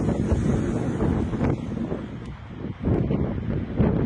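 Wind buffeting a phone's microphone outdoors, a low rumble that rises and falls in gusts.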